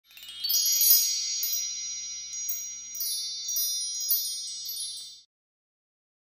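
High, shimmering chimes: a run of struck notes, each ringing on over the last, that stops suddenly about five seconds in. It is the chime sound effect of a video's opening intro.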